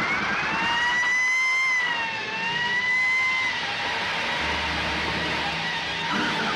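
A police siren wails. Its pitch climbs over the first two seconds, dips once, rises again and fades out about three and a half seconds in, over a steady background of noise.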